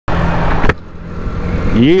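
Yamaha YZF-R125's single-cylinder engine running with wind rushing over the microphone while riding, loud at first and cutting off abruptly about two-thirds of a second in. A quieter engine hum follows.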